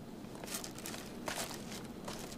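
A few soft footsteps of a person walking away.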